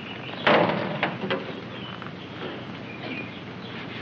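An old car's hood being opened: one short loud noise about half a second in, followed by a few lighter knocks.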